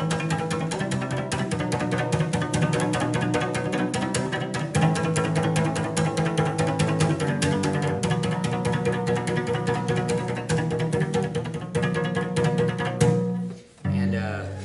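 Cello played with a rapid bouncing-bow rhythm: fast short percussive strokes over sustained low notes. It stops about a second before the end with a final accented stroke.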